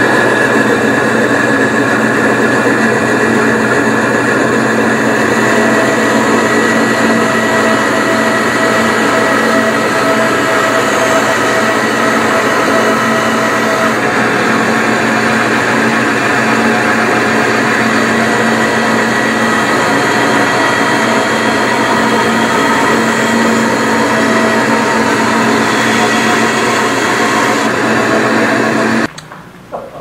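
Bandsaw running steadily and cutting a block of scrap wood, with a constant motor hum and a few held tones. The sound changes a little about halfway and stops abruptly near the end.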